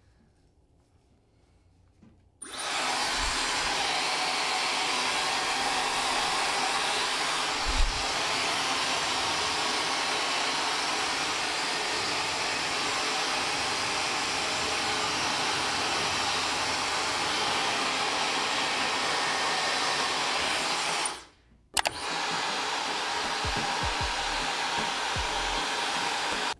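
Dyson Supersonic hair dryer blowing steadily on wet hair, starting a couple of seconds in. The sound drops out for about half a second about three-quarters of the way through, then continues.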